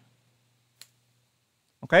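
A single short click of a computer key, the Enter key being pressed once about a second in, with only a faint low hum around it.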